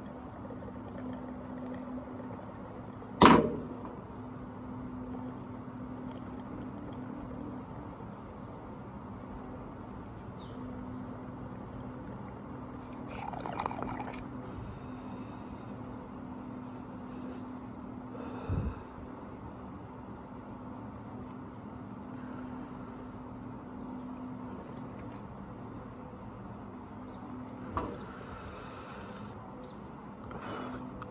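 A steady low hum with one sharp knock about three seconds in, the loudest sound, and a few softer knocks and rustles later on.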